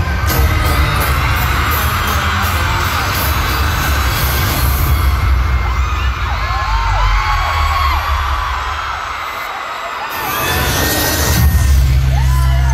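Bass-heavy intro music over a concert PA with a screaming, cheering crowd, high screams rising and falling above it. The bass drops out about nine to ten seconds in and surges back near the end.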